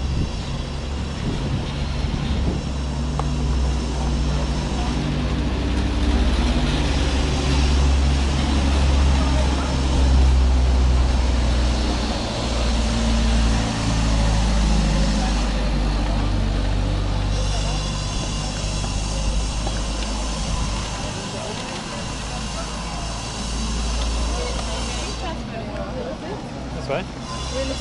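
City street ambience: a steady low rumble, from traffic or wind on the camera microphone, under the voices of passers-by.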